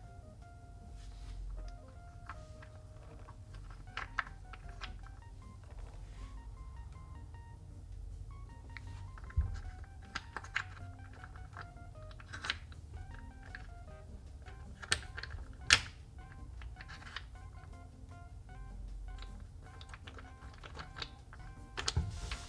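Small wooden puzzle blocks clicking and knocking as they are lifted and set back down in a wooden tray: scattered sharp clicks, most of them between about nine and sixteen seconds in. Soft background music plays underneath.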